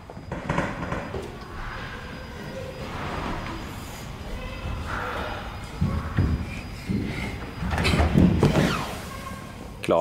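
Children moving on indoor play equipment right after a 'go!': rubbing, scuffing and knocking against the structure, with louder thumps about six seconds in and again around eight seconds in, and faint voices.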